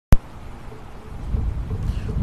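A sharp click just after the start, then wind buffeting the microphone as a low rumble that grows louder toward the end.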